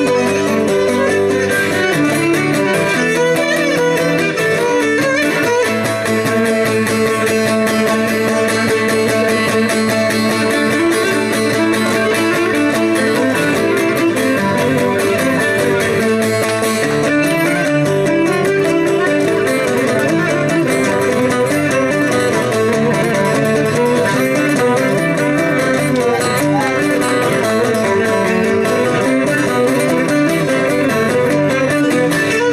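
Cretan lyra with laouto accompaniment playing a continuous instrumental passage at a steady level.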